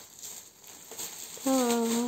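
Faint crinkling of a plastic toilet-paper pack wrapper being handled. About one and a half seconds in, a woman's voice makes a short held sound.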